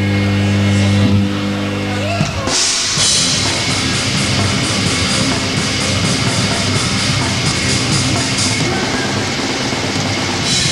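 Heavy metal band playing live: a held low distorted note rings steadily for about two seconds, then the full band crashes in with drums and cymbals and plays on.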